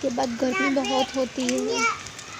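A young child's voice talking loudly and close, in short phrases with brief pauses.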